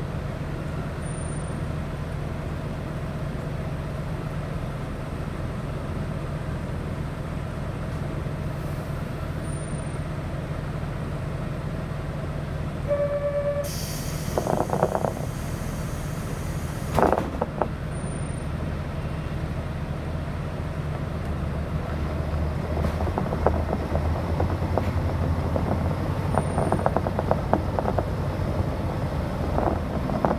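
Diesel railcar heard from inside, its engine idling steadily while the train stands at a station. About 13 s in there is a short tone, then a hiss of air lasting about a second and a half and a knock. In the last third the engine note grows louder and a rapid clatter builds as the train starts to pull away.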